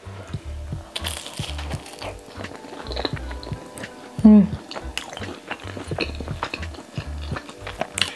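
Background music with a steady beat, over the crunch of a crisp fried pastry patty being bitten into and chewed. A brief voice sound comes just after four seconds in.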